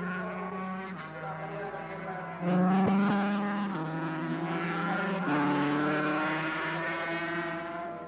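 Racing motorcycle engines running at high revs. Their pitch holds steady and then steps up and down several times, and they get louder about two and a half seconds in.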